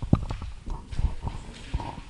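Footsteps: a string of light, irregular knocks of shoes on a hard floor as a man walks, picked up close by the handheld microphone he carries.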